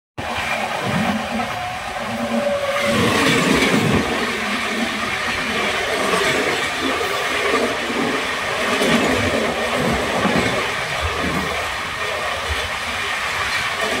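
Loud, steady running noise of a moving express train heard from an open coach doorway, with a train on the next track rushing past close by. The noise grows a little louder about three seconds in, as the other train draws alongside.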